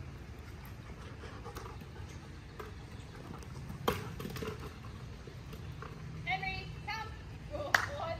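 A hard plastic dog ball bouncing on mulch, one sharp knock about four seconds in, over a steady low background. Short high-pitched voice-like calls follow near the end, with another sharp click just before it ends.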